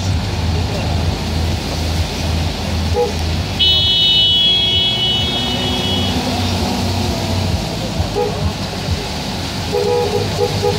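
Road traffic heard from inside a moving car: a steady low engine and road hum, with a car horn held for about two and a half seconds a little before the middle, and a few short beeps near the end.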